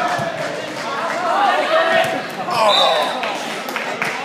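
Players and spectators shouting and calling out in a reverberant gymnasium during a volleyball rally, with sneakers squeaking on the hardwood court.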